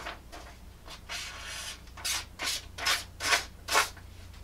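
A dull 1084 high-carbon steel knife edge dragged against a sheet of paper, rasping and tearing it instead of slicing: the sign of a dull edge. One longer stroke comes about a second in, then five short strokes at about two and a half a second.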